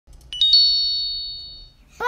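A bright chime: three quick notes rising in pitch, ringing on together and fading out over about a second and a half.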